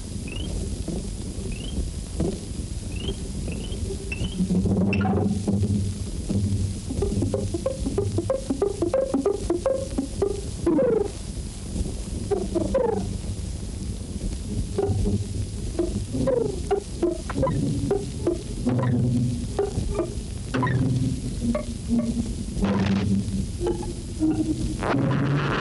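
Synthetic, hand-drawn optical film soundtrack of bleeps and buzzes: a few short chirps rising in pitch, then from about five seconds a busy, jerky run of low buzzing notes, pulses and sliding tones.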